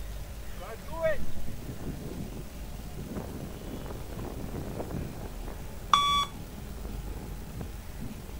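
Electronic beep of the Luc Léger 20 m shuttle-run test recording: one short, sharp tone about six seconds in, the timing signal by which the runner must reach the line.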